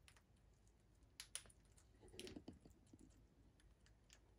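Near silence with a few faint, light clicks and taps: two about a second in and a short cluster around two seconds in.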